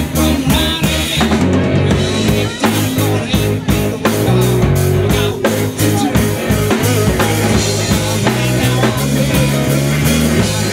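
Live rock band playing: a drum kit keeping a steady beat under electric bass and electric guitar, with a singer at the microphone.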